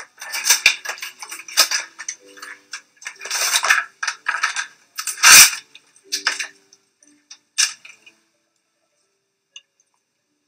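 Gloved hands preparing filler syringes and a cannula at a countertop: irregular rustling of wrappers and small clicks and clinks, the loudest a little past halfway, dying away near the end.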